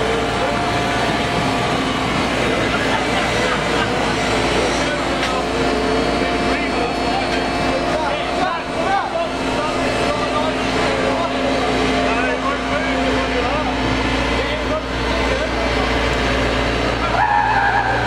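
Takeuchi TB175W wheeled excavator's diesel engine running steadily as the machine drives slowly past, with voices around it. A louder, higher-pitched sound joins near the end.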